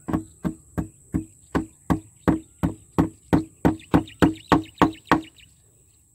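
Hand tool working the edge of a plywood board: regular sharp strokes about three a second, each with a short hollow ring from the board, stopping about five seconds in.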